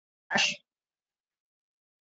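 A single brief burst of a person's voice, about a third of a second long, sudden and sharp, shortly after the start.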